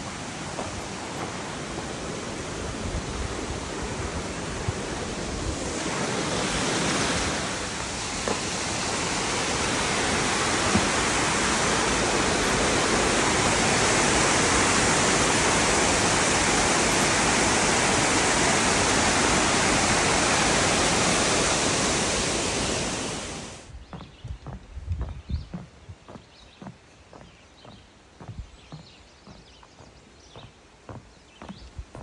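A woodland waterfall cascading over a rock slab: a steady rushing of water that grows louder over the first ten seconds and then holds. About three-quarters of the way through it cuts off abruptly, leaving quiet surroundings with the light knocks of footsteps.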